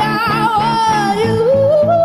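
A woman singing a long wavering note that then glides upward, over a strummed electric guitar keeping a steady rhythm.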